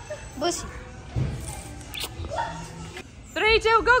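Mostly voices. Near the end a high voice shouts a fast "go, go, go", about six calls a second. Before that there are scattered voice fragments and a few dull thumps.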